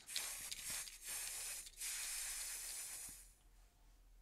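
Aerosol spray-can hissing in three bursts, the last and longest fading out after about three seconds: a sound effect laid under a graffiti-style logo being sprayed on.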